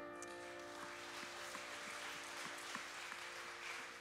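Congregation applauding lightly as a worship song ends, with a sustained keyboard chord held underneath.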